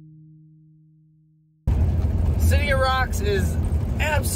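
The tail of background music, two held low tones, fades out; then, about a second and a half in, it cuts to the loud low rumble of a van's cabin while driving, with a man talking over it.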